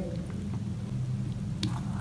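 A spoon stirring thick, oily ivy gourd pickle in a stainless steel bowl, with wet squishing over a low steady rumble. About one and a half seconds in, the spoon clicks once against the bowl.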